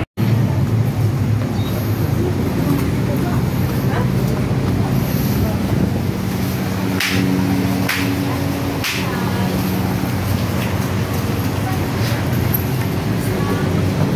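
City street traffic: a steady low rumble of car engines and road noise, with voices of people nearby. The sound drops out for a split second right at the start.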